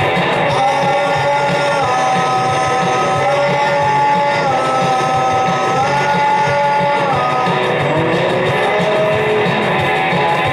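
Rock music with electric guitar: a melody of long held notes stepping up and down over a dense, steady accompaniment, giving way to shorter notes near the end.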